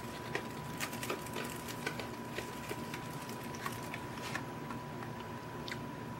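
Faint, irregular crinkles and small clicks of a clear plastic packaging cover being handled and lifted off a model boxcar in its tray.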